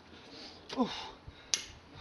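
A man's short "oh", then a single sharp click about a second and a half in.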